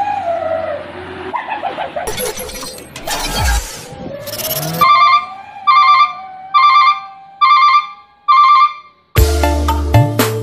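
Electronic intro sound effects: a falling tone, then whooshing and crashing noise, then five short electronic beeps a little under a second apart. Near the end, music with a beat starts.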